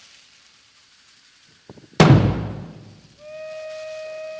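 A single loud, deep drum-like boom about halfway through, dying away over about a second in the performance's music. Near the end a steady, held wind-instrument note begins.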